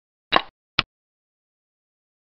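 Two short clicks about half a second apart: a xiangqi program's sound effect for a piece being selected and then placed on the board.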